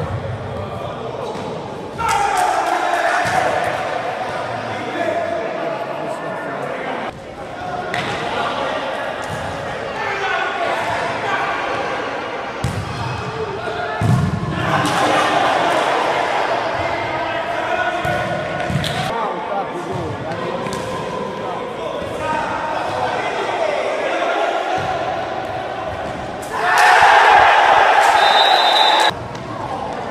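Futsal match in an echoing indoor sports hall: players shouting to each other, with the ball thudding and being kicked on the hard court floor. A loud burst of shouting comes near the end.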